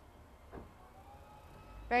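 A pause in the talk: quiet background with one faint, short knock about half a second in. A woman starts speaking again at the very end.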